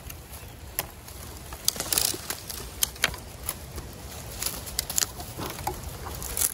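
Dry, burnt bamboo leaves and twigs crackling and snapping in irregular sharp clicks as someone moves and handles them on the ground, with a cluster of louder crackles about two seconds in and again near five seconds.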